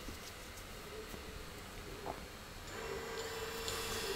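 Faint steady whine of a miniquad's small brushless motors, spinning slowly without propellers for a spin-direction check, coming in about three-quarters of the way through over a low hiss.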